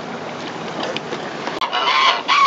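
A steady hiss of wind and water at sea, cut off about a second and a half in by domestic geese calling loudly in short, pitched honks.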